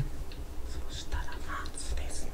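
A person whispering in short, breathy phrases, with a low rumble underneath.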